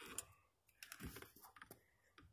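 Faint scattered clicks and light knocks from handling while someone climbs into a van's cab: a few soft taps, then a short cluster of clicks around the middle.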